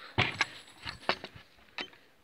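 A few short, sharp knocks and clicks from the wooden boards of a rabbit hutch being handled.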